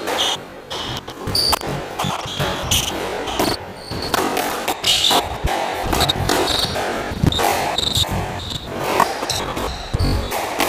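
Squash rally: the ball cracks off rackets and the court walls again and again, with rubber-soled shoes squeaking sharply on the wooden floor as the players turn and lunge, all ringing in the court's echo.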